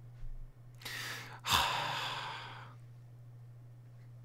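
A man sighs: a short breath in about a second in, then a longer, louder breath out that fades away, over a steady low electrical hum.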